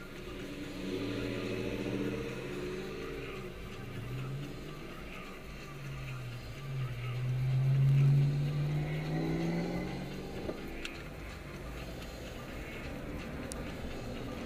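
Car engine accelerating away through an intersection, heard from inside the cabin: its pitch climbs about a second in, then climbs again from about six seconds to its loudest near eight seconds before easing off.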